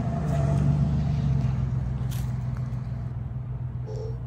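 Steady low rumble of a motor vehicle engine running, with a brief click about two seconds in.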